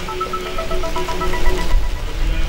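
Music: a slow melody of long held notes.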